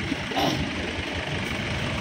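Engine of a Mahindra off-road jeep running at low speed with a steady, even rumble as the jeep drives up a dirt track.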